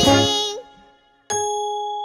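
A sung children's-song note ends, then just past a second in a bell is struck once and keeps ringing with a bright, steady tone, the cartoon alarm clock's bell going 'ding'.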